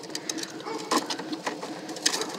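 Irregular clicking and rattling, with a brief louder rattle about a second in: a plastic toy wheelbarrow being handled.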